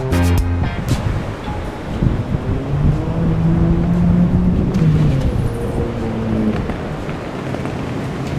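Background music over the real-time sound of a Tamiya M05Ra radio-controlled Renault 5 Turbo driving on dirt, its electric motor and drivetrain whining underneath.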